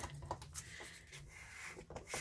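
Faint handling sounds of a gloved hand pressing and rubbing a sheet of card stock flat onto a glass craft mat, with a few light taps, over a low hum.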